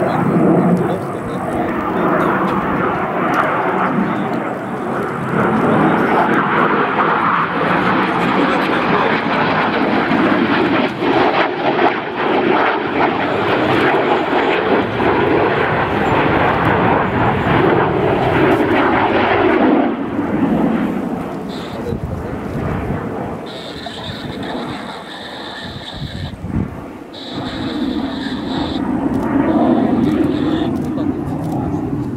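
Yakovlev Yak-130 jet trainer's twin turbofan engines as it flies aerobatics overhead: a loud rushing jet roar that eases off about two-thirds of the way through. Near the end a steady high whine comes and goes.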